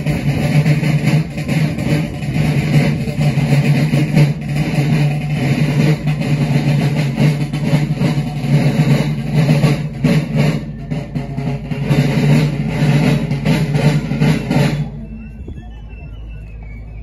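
Marching drums of a Napoleonic-style folkloric march company playing a march rhythm. The music stops abruptly near the end.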